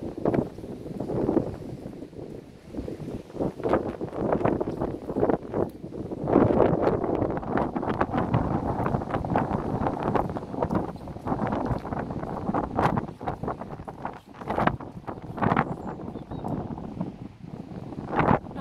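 Wind buffeting the microphone in uneven gusts, a rough low rumble that swells and dips.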